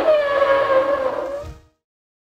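Dinosaur call sound effect: one long pitched call held on a steady note that sags slightly, fading out near the end.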